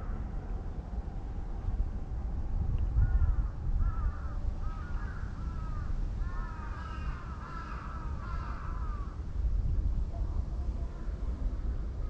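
Crows cawing in a rapid run of short calls from about three seconds in to about nine seconds, over a steady low rumble.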